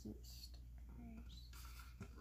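Mostly quiet room tone: a softly spoken word at the start, then faint handling of a small plastic case near the end.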